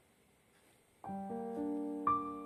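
Near silence for about a second, then background piano music starts, its notes coming in one after another and held.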